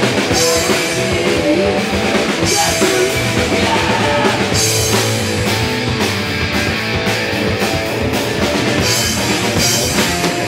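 Hardcore punk band playing live: electric guitar, bass guitar and a drum kit with cymbal crashes, loud and continuous, without vocals.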